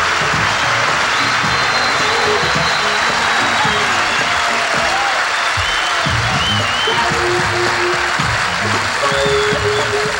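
Studio audience applauding and cheering, with a band playing underneath and coming through more strongly about halfway through.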